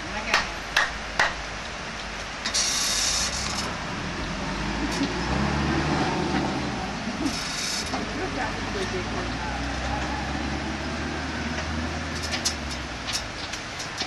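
Three sharp hand claps in the first second or so. About five seconds in, a low motor-vehicle engine rumble builds, holds, and fades away near the end, with two short bursts of high hiss along the way.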